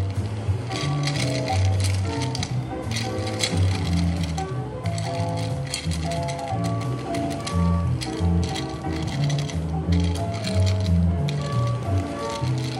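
Background music with a steady bass line and sustained melodic notes.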